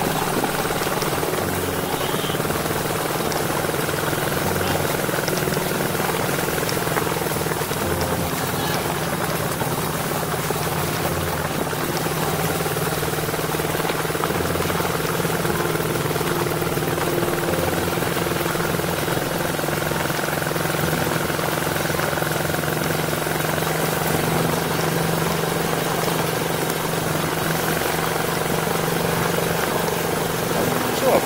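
Loncin 125 motorcycle's single-cylinder engine running at a steady, low road speed while being ridden.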